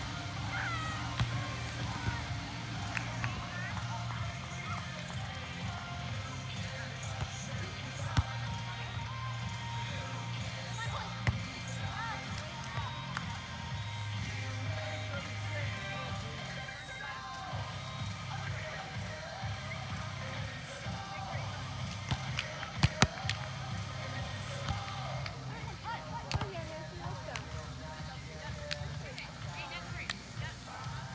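Outdoor beach volleyball ambience: people talking and background music from the venue, broken several times by sharp smacks of hands hitting the ball. The loudest smacks come close together about three-quarters of the way through.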